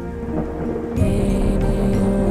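Ambient new-age music with sustained tones. About a second in, a thunder-and-rain nature sound effect comes in over it with a low rumble and a steady hiss of rain.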